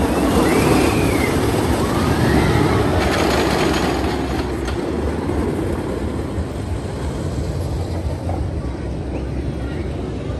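Wooden roller coaster train rumbling along its track, loudest in the first few seconds and then easing off, with a few rising-and-falling cries from people near the start.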